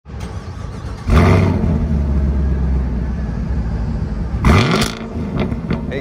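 Car engine revving: a sudden loud rev about a second in settles into a steady low rumble, then a second rev rising in pitch comes about four and a half seconds in and dies away.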